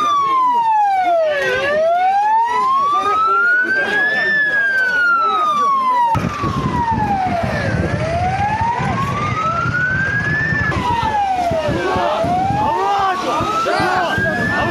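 Police car siren wailing, its pitch sweeping slowly down and up again, about one rise and fall every six seconds, over the noise of a crowd and voices.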